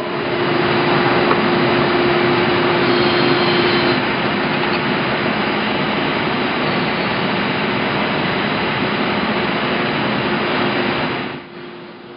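1990 Okuma GP-44N CNC cylindrical grinder running with its workhead turning at 300 RPM: a loud, steady mechanical whir with a steady hum, the hum strongest in the first few seconds. It starts at once and stops shortly before the end.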